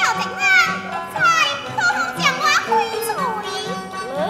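Teochew opera singing: a high-pitched voice sliding steeply up and down in repeated phrases over instrumental accompaniment with steady held notes and a low rhythmic pulse.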